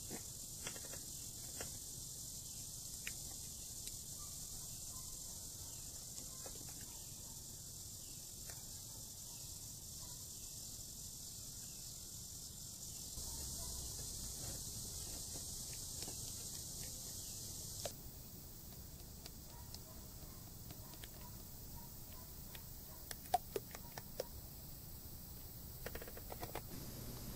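Faint steady hiss, with motor oil poured from a plastic quart bottle through a plastic funnel into the engine's oil filler for a few seconds around the middle, and a few faint clicks near the end.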